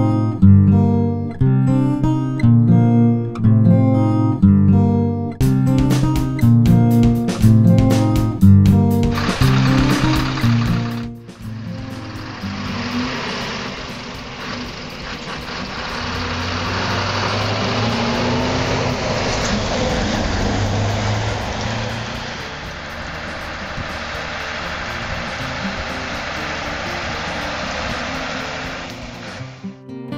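Strummed acoustic guitar music for about the first ten seconds. It cuts to live road sound: a Scania V8 lorry pulling a livestock trailer, approaching, loudest around the middle as it passes, then fading away near the end.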